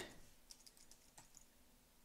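Faint computer keyboard typing: a few soft, separate keystrokes.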